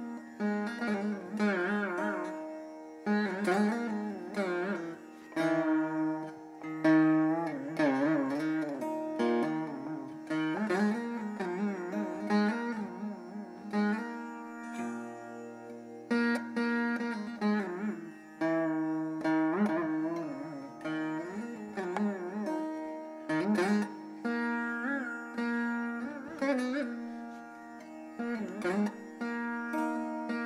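Two Carnatic veenas playing an improvised passage: plucked notes bent with wavering, sliding ornaments (gamakas) over the ringing drone strings.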